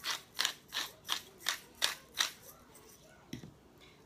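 Hand-twisted pepper mill grinding pepper, a steady run of crunching clicks about three a second that stops a little over two seconds in. A faint knock follows near the end.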